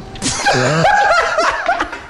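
Two men laughing hard together, the laughter dying down near the end.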